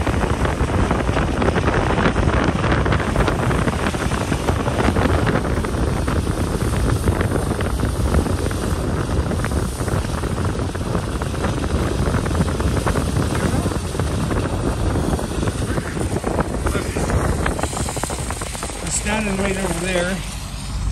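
Steady wind rush and low rumble from a pickup truck on lake ice, heard through the open driver's window. A voice comes in near the end.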